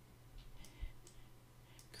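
Faint, scattered clicks and taps of a stylus writing on a screen, a few irregular clicks over a steady low hum.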